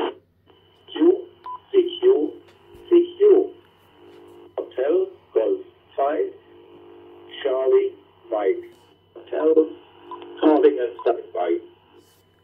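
An analogue FM voice transmission received on the ICOM IC-705 and heard through its built-in speaker: a thin, telephone-like radio voice talking in short phrases, with a faint steady high whine underneath.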